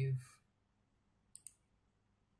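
Two quick, light computer clicks close together about a second and a half in, as an IP address is pasted into a terminal text editor.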